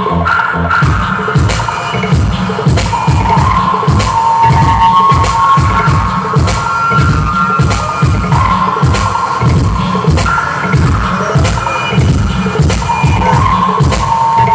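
Electronic music finger-drummed live on a pad controller: a dense, steady beat of drum hits over bass, with held synth notes that come and go.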